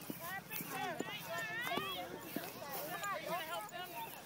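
Several people's voices talking and calling out over one another, with a few short knocks in the first half.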